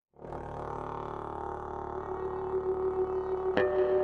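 Contemporary chamber music for bass saxophone, bass trombone and electric bass guitar. Out of silence, a dense, low, sustained chord of held notes enters just after the start and slowly swells. Near the end a sharp attack brings in a new, strong held note.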